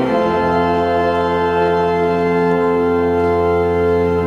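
Organ playing a chord that changes just after the start and is then held steadily, unchanging in pitch and loudness.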